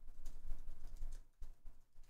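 Faint computer keyboard typing: scattered soft key clicks.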